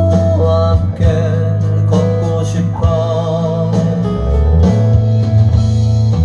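A recorded song with a sung melody over guitar and bass, played back through large floorstanding hi-fi loudspeakers in a listening room. The melody has wavering held notes.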